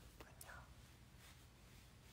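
Near silence: faint room tone, with two soft clicks and a faint breathy sound in the first half-second.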